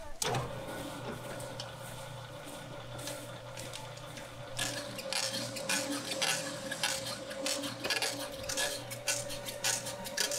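An electric stand mixer starts up and runs steadily, its dough hook turning lumps of dough and sugar in a stainless steel bowl. From about halfway, the lumps and hook rattle and scrape against the bowl more and more.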